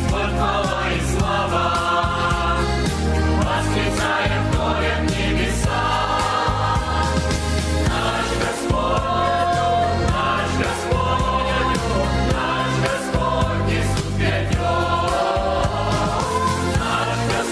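Mixed church choir singing a Russian-language worship chorus in several voices, with electronic keyboard accompaniment and a steady bass underneath.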